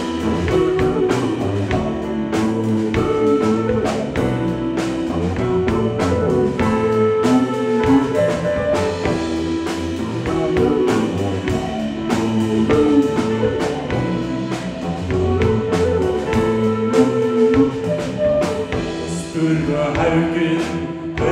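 Live progressive rock band playing an instrumental passage: flute melody over a Rickenbacker 4003 electric bass, drum kit and keyboards, with a steady drum beat.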